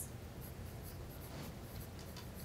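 Faint scratching of a pen writing on paper, in a few short strokes, over a steady low room hum.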